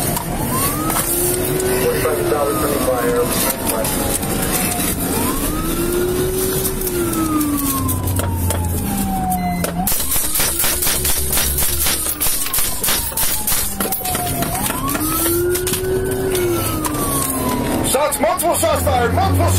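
Police patrol vehicle siren in wail mode, its pitch rising and falling in slow sweeps about every four to five seconds, over road and engine noise inside the pursuing car.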